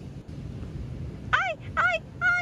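Low wind rumble on the microphone. About a second and a half in, a child's voice gives two short, high-pitched exclamations.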